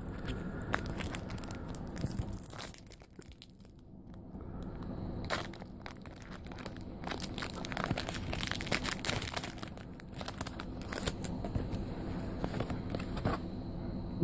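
A foil Pokémon trading-card booster pack wrapper crinkling as it is handled and torn open, a dense crackle that drops away briefly a few seconds in.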